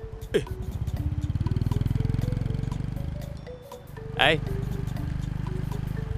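Small underbone motorcycle engine pulling away and running along, a low, even rumble that swells over the first couple of seconds, eases briefly, then holds steady.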